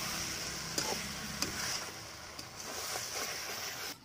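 Chicken masala sizzling in a kadai as it is stirred, the spatula scraping the bottom where the masala is sticking, with a few short clicks.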